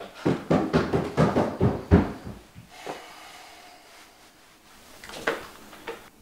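Footsteps and door knocks in a small room: a quick run of thuds for about two seconds, then quieter, with one short sound near the end.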